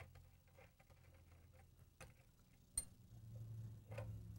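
Near silence with faint scattered metal ticks and clicks from a wrench and hands working the nut that holds the cooling fan on a Rotax engine. There is one sharper click nearly three seconds in, over a low steady hum.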